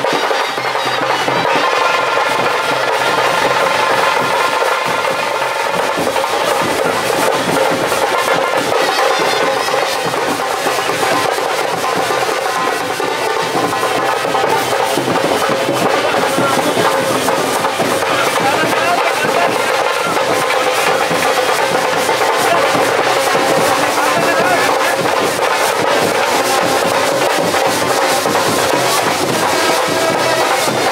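Live procession band music: drums beating under a steady, droning wind-instrument melody, with crowd voices mixed in.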